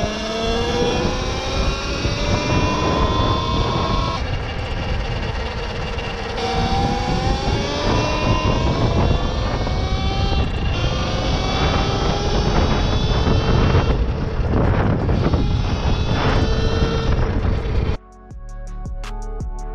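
Talaria XXX electric dirt bike's motor whining and rising in pitch as the bike accelerates, over heavy wind rumble on the helmet microphone. The run breaks off and starts again several times, each time climbing anew.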